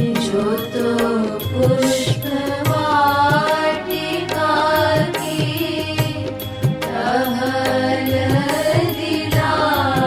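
Hindi devotional song (bhajan): a voice sings a wavering melody over instrumental accompaniment and a steady drum beat.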